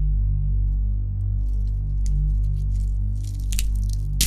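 Electronic music track intro: a deep held bass under a pulsing bass pattern of about three beats a second, with short hissing noise effects about three seconds in.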